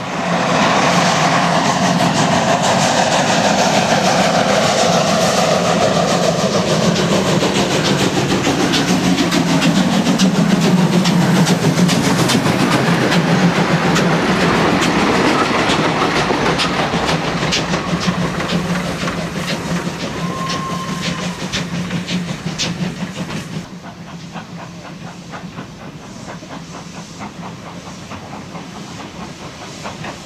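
Large steam locomotive and its tender running past close by, with wheels clattering over the rail joints and steam hissing. A brief high tone sounds about two-thirds through. The loud passing stops abruptly near the end, giving way to quieter background.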